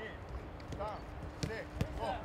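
A football kicked back and forth on grass in a quick passing drill: a few sharp thuds of boot on ball, the loudest near the end.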